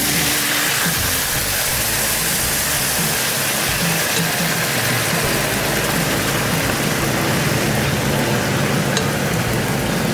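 Steady sizzling and bubbling from a hot sauté pan of mushrooms and onions as ladlefuls of beef stock are poured in, over the steady hum of a range-hood exhaust fan.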